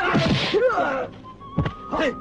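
Fight sound effects over background music: a loud noisy hit with a cry sliding in pitch during the first second, then a sharp thud about one and a half seconds in.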